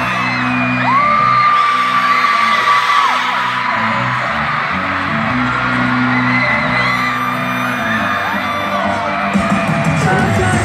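Loud live concert music with sustained low notes, under a screaming crowd; one long high scream starts about a second in and is held for about two seconds.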